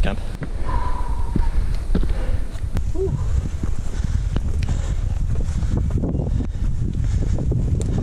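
Footsteps climbing a rocky forest trail, heard as scattered short clicks over a steady low rumble on the microphone. A voice briefly says "ooh" about three seconds in.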